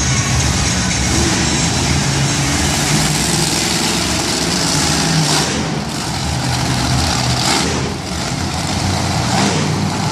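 Monster truck supercharged V8 engines running loud, with the throttle swelling twice around the middle.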